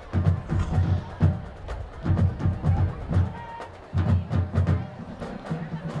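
Marching band drums playing a cadence: clusters of deep bass-drum hits, about three a second, with short gaps between the clusters.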